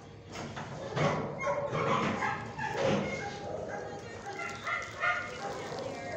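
Dogs barking repeatedly in a shelter kennel.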